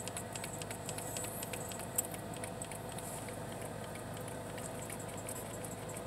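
Faint, rapid scratchy rubbing of fingers spreading BB cream on the skin of a wrist, with one sharper click about two seconds in, over a steady low hum in a car's cabin.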